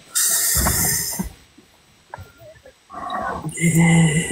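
A woman's voice close to the phone microphone: a breathy rush at the start, then after a quiet pause a held low hum, 'mmm', near the end.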